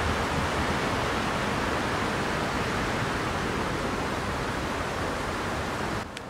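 A steady, even hiss of noise that starts and stops abruptly.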